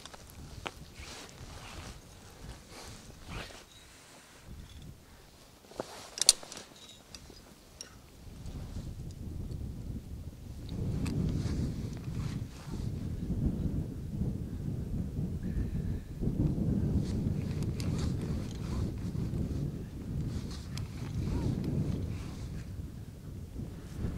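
Wind gusting on the microphone, a low uneven rumble that sets in about eight seconds in and swells and fades in gusts. Before it come a few faint clicks and knocks, one sharp click about six seconds in.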